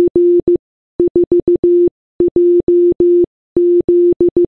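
Morse code sent as a single steady beeping tone, keyed very fast in short and long pulses: four quick groups of dots and dashes with brief gaps between them. The groups are dash-dot-dash-dot, dot-dot-dot-dot-dash, dot-dash-dash-dash-dash and dash-dash-dot-dot-dot, spelling C, 4, 1, 7.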